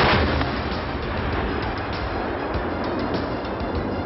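A loud explosive bang right at the start, trailing into a long noisy decay that slowly fades, over background music.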